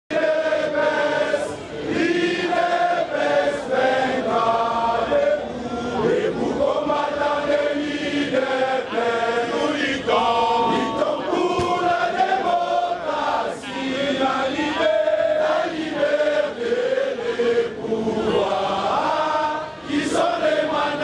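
A crowd of many voices singing a chant together, continuously and without pause.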